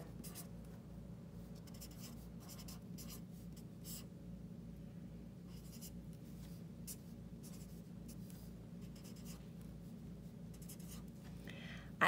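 Felt-tip marker writing digits on paper: a string of short, faint scratching strokes over a low steady hum.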